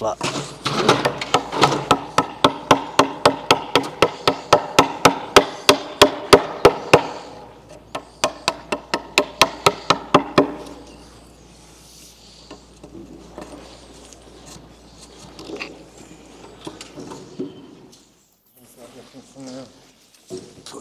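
Mallet tapping a framing chisel into a timber joint's shoulder, about four sharp knocks a second, paring it down to a mark so the joint will sit flat. The knocks slow after about seven seconds and stop about ten seconds in, leaving only faint handling sounds.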